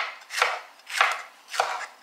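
Chef's knife slicing a yellow bell pepper on a wooden cutting board: about four even strokes, roughly one every half second, each a quick cut ending in a knock of the blade on the wood.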